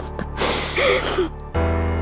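A woman's short, breathy laugh, a burst of breath with a brief voiced part, over soft background music. The music moves to a new chord about one and a half seconds in.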